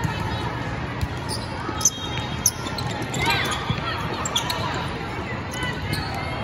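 Echoing din of a large indoor volleyball hall: many voices mixed with volleyballs being hit and bouncing off the floor. Two sharp ball smacks stand out about two and two and a half seconds in.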